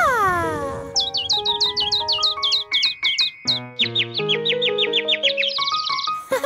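Cartoon birds chirping in quick high tweets, about five a second, over light background music. At the start there is a single falling whistle-like glide.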